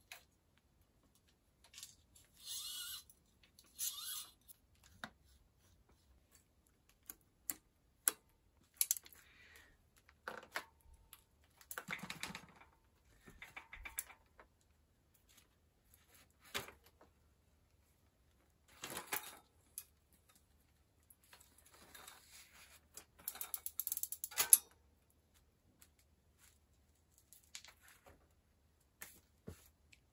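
Hand work on an old Peugeot road bike's components: irregular metallic clicks, clinks and short rattles of parts and tools being handled. The chain and rear derailleur are being worked on, with the sharpest click a little before the end.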